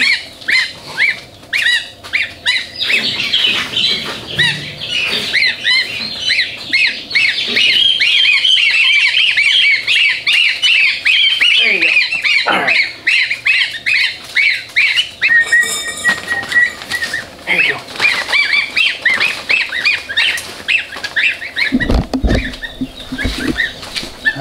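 Chorus of baby goslings and ducklings peeping: a dense, continuous run of quick, high chirps. A few low bumps near the end come from the birds being handled in the pen.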